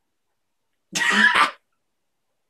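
A single short burst of stifled laughter from a man, about a second in and lasting under a second.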